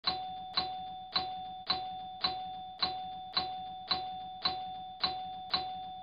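A bell-like ding sound effect struck eleven times at an even pace of about two a second, each identical note ringing briefly and fading before the next.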